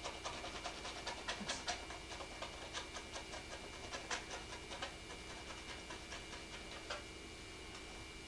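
Palette knife dabbing and scraping on a canvas: quick, irregular ticks and taps, thick for the first few seconds and then thinning out, over a steady electrical hum.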